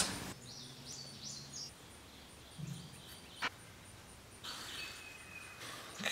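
Thread drawn across a block of beeswax to wax it: faint short squeaks, with a single sharp click about three and a half seconds in.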